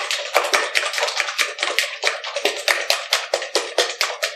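Five raw eggs being beaten with a fork in a plastic bowl: rapid, even clicks of the fork against the bowl, several a second.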